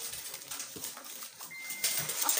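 Faint rustling and crinkling of paper banknotes as hands rummage through them in a plastic basin. A thin, steady high tone sounds for about half a second near the end.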